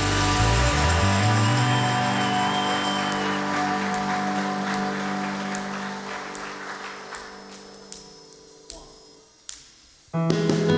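A live band's closing chord held and slowly fading away over several seconds. A few small clicks sound near the end as it dies out.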